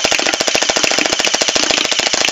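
AKM-47-style battery-powered gel ball blaster firing a continuous full-auto burst of gel beads: a rapid, even rattle of shots.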